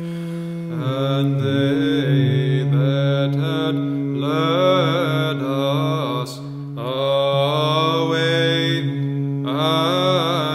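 Orthodox church chant: a melody sung over a steady held drone note, the ison of Byzantine chant, with a short break between phrases about six seconds in.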